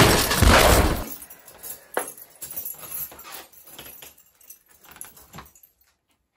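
A door handle and the keys hanging in its lock rattling and clicking as the door is worked at. A loud rough clatter fills the first second, then scattered clicks and jingles thin out and stop shortly before the end.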